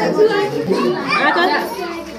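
Overlapping chatter of several voices, women and children talking at once.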